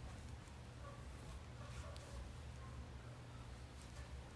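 Quiet room tone with a steady low hum and a few faint soft ticks from a metal crochet hook working cotton string.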